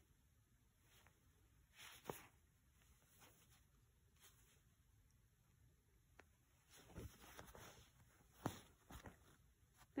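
Near silence, with a few faint ticks and soft rustles from hand embroidery: a needle and thread being drawn through cotton fabric as satin stitches are worked.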